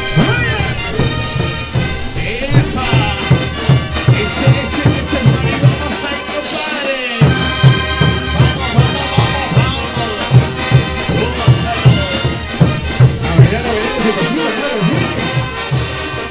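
Large Peruvian brass band, with trumpets, trombones, baritone horns, sousaphones, bass drums and cymbals, playing a chutas dance tune over a steady, driving drum beat. The low drums drop out briefly about seven seconds in and again near the end.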